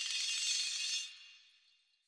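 A short, high shimmering chime-like sound effect that fades away within about a second and a half, with nothing low in it.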